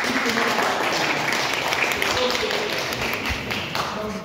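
Audience clapping, a dense patter of many hands, with a few voices mixed in, fading near the end.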